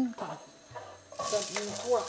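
Chopped onion tipped into a pan of hot oil with cumin seeds, setting off a sudden sizzle about a second in that keeps going.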